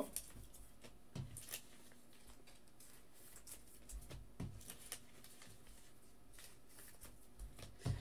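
Faint clicks and rustles of trading cards being handled, with a few light ticks about a second in and again around the middle, over a quiet room hum.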